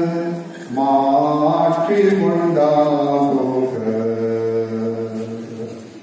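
A man's solo voice chanting a liturgical melody through a microphone, in long sustained notes that step between pitches, ending on a long held note that fades out near the end.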